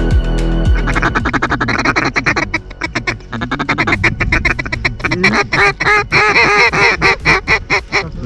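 Background music for about the first second, then rapid duck quacking and chatter that builds and grows louder, ending in a fast series of distinct quacks, several a second, over the last few seconds.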